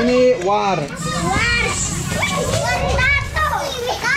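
A group of children shouting and chattering excitedly in Indonesian, several high voices overlapping, calling out about a snake tattoo.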